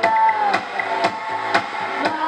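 Karaoke: a pop backing track with guitar and a steady beat of about two a second, with a woman singing along into a microphone. A held note near the start bends down.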